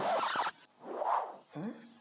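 Two short scratchy, rustling noises about a second apart, followed near the end by a brief rising vocal sound.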